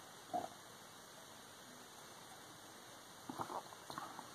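A man sipping stout from a glass: one short slurp about a third of a second in, then the room goes quiet apart from a few faint mouth and breath sounds near the end.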